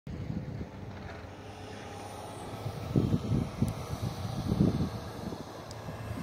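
Wind buffeting the phone's microphone in irregular low gusts, strongest about three seconds in and again a little before the five-second mark, over a low steady engine hum.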